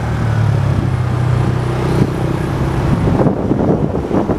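Small motorbike engine running steadily at a cruise, heard from the machine being ridden, with road noise. Wind buffets the microphone in the last second.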